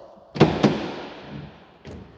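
Pickup truck tailgate being unlatched and dropped open: two sharp clunks a quarter second apart, then an echoing decay of about a second and a light click near the end.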